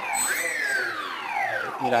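Skywalker X8 flying wing's brushless electric motor spinning with no propeller fitted, throttled from the transmitter. Its whine rises sharply in the first half second, then falls steadily in pitch as the throttle is eased back.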